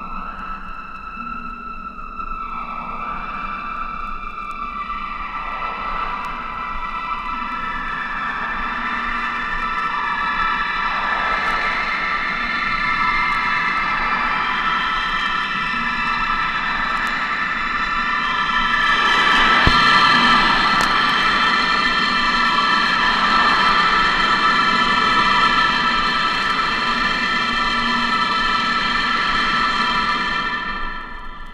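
Abstract electronic synthesizer music: a sustained, many-toned synth chord with repeated swooping filter sweeps, slowly building in loudness. A single sharp click cuts through about two-thirds of the way in.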